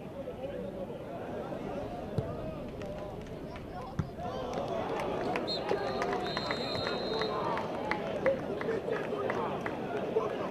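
Football stadium crowd and players shouting. The crowd gets louder about four seconds in, with a thump just before, sharp claps in the second half and a steady high tone lasting about two seconds around the middle.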